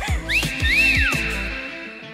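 A two-part wolf whistle, a short rising whistle followed by a longer one that rises and then falls, over background music that fades out in the second half.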